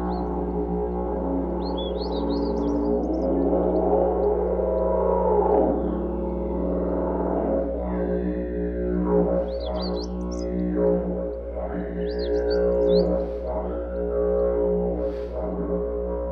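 Didgeridoo music: a continuous low drone whose tone sweeps up and down, with short high chirps at a few points.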